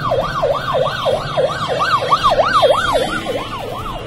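Emergency-vehicle siren in a fast yelp, its pitch sweeping up and down about three times a second.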